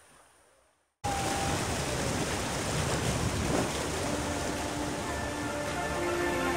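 Faint music fades into a moment of silence, then the steady rush of river water around an inflatable raft starts abruptly about a second in.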